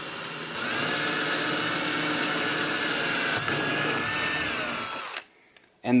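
Cordless drill boring a pilot hole through a plastic mounting plate into a plastic kayak hull: the motor runs steadily at speed, then its pitch falls as it slows and stops about five seconds in.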